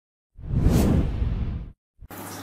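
Whoosh transition sound effect with a deep rumbling low end. It starts about a third of a second in, swells, and cuts off after just over a second.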